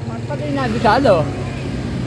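A short spoken phrase over a steady low motor hum.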